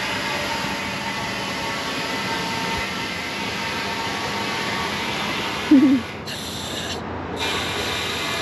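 Steady hiss of compressed air from a scuba tank flowing through a coiled hose into a large ball fender as it inflates.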